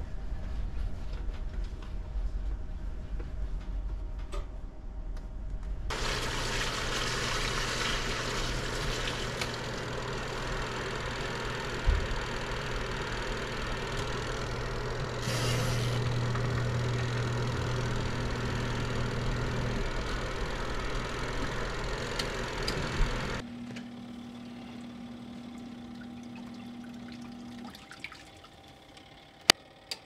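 Compact twin-tub washing machine's spin dryer running with a steady motor hum, while water rushes out through its drain tube into a bucket. The rushing starts about six seconds in and stops abruptly after about seventeen seconds, leaving a quieter steady hum for a few seconds more.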